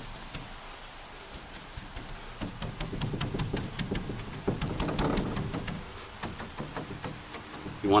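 Paintbrush dabbing resin into fiberglass cloth on a canoe hull patch: a run of quick, soft, wet taps as the bristles are blotted down to saturate the cloth.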